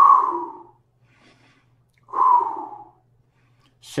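A man taking deep breaths close to the microphone: a loud exhale right at the start and another about two seconds in, each under a second long, with a faint inhale before each.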